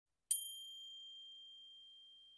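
A single high, bell-like chime, struck once about a third of a second in, ringing on one clear tone and slowly dying away.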